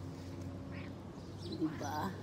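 Quiet outdoor background: a steady low hum with small birds chirping now and then. Near the end comes a short voiced call with a bending pitch.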